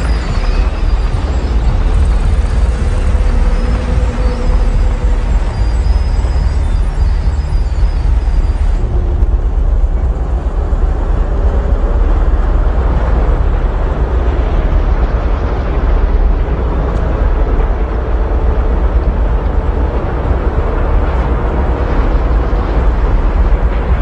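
Bulldozer's diesel engine running with a steady, heavy low rumble, with faint high chirps over it in the first several seconds.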